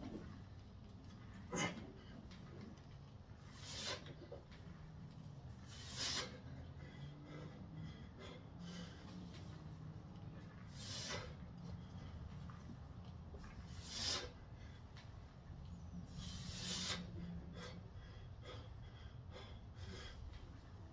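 A man's hard breathing during heavy barbell back squats: about six sharp, noisy exhales come a few seconds apart, one with each rep, over a steady low hum.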